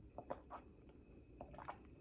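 A person sipping and swallowing from a glass jar: a few faint, short wet mouth sounds, in two small clusters near the start and past the middle, over quiet room tone.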